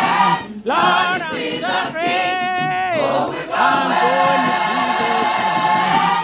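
Gospel choir singing with a lead voice, without clear words, dipping briefly about half a second in; around the middle a voice holds a long note with a wide vibrato.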